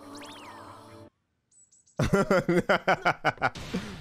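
Anime soundtrack played back: about a second of quiet music with a few high gliding tones, then a near-silent gap, then a voice speaking from about halfway in.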